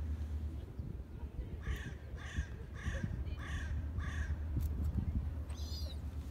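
A crow cawing five times in an even series, the short calls a little over half a second apart, over a steady low rumble.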